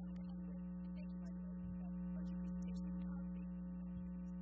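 Steady electrical mains hum on the meeting-room microphone feed: a constant low drone that does not change.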